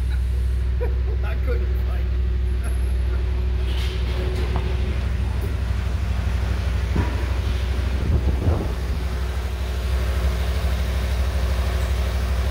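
A 2012 Ford F-150's 5.0-litre V8 running at a steady idle, with a few knocks about seven and eight seconds in.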